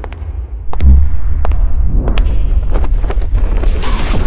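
Sound-designed film soundtrack: a steady deep bass with a heavy low thump about a second in and a few sharp clicks scattered through.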